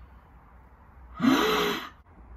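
A man's breathy gasp with a rising pitch, about three-quarters of a second long, starting just past a second in.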